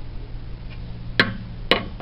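Two sharp clicks of a metal extendable shower-curtain rod knocking against a stone tabletop, about half a second apart, over a steady low hum.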